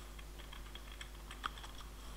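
Computer keyboard being typed on: a quick run of light key clicks, with one louder keystroke about one and a half seconds in.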